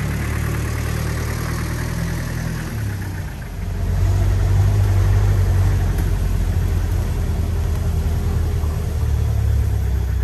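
Engine of an old open-backed 4x4 utility vehicle idling, then running louder from about four seconds in as it drives off, heard from the back of the vehicle.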